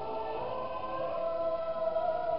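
A mixed choir of male and female voices singing slowly, holding a long sustained note from about a second in.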